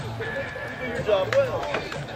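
Indistinct voices of people talking nearby, with a few sharp clicks or knocks about a second in.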